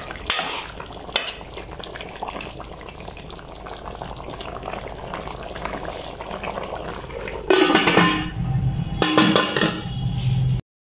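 Tinda gosht curry simmering in an aluminium pot, a steady bubbling. Near the end come two louder spells of metal clatter as the pot is handled.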